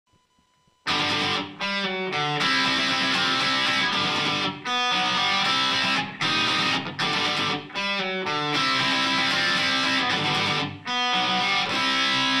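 Electric guitar playing a strummed chord riff, starting about a second in, with several short stops where the sound drops out before the chords come back in.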